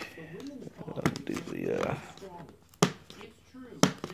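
Hard-shell drone carrying case handled by hand, with two sharp clicks about a second apart near the end.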